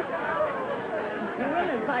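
Mostly speech: a voice talking over the murmur and tail of a studio audience's laughter.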